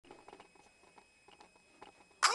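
Near silence: quiet room tone with a few faint scattered taps and clicks.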